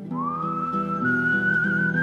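A man whistling one long, clear note that slides up into pitch at the start and is then held steady, over nylon-string guitar and string-quartet chords.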